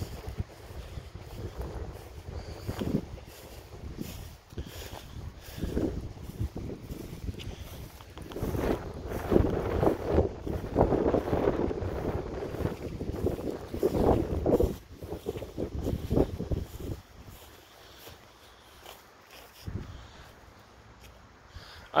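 Wind rumbling on the phone's microphone, with footsteps and rustling through long grass, loudest in the middle stretch and quieter near the end.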